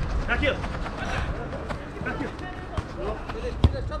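Players calling and shouting across a soccer pitch, with the sharp thud of a football being kicked near the end.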